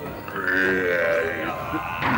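Animated rock creature's vocal effect: one low, pitched call lasting about a second.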